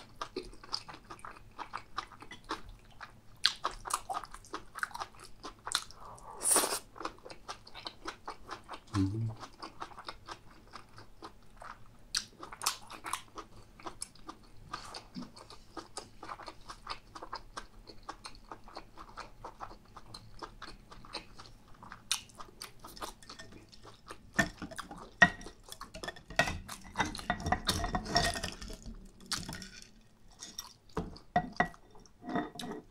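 A person chewing food close to the microphone: a steady run of wet mouth clicks and small crunches, growing louder and busier near the end.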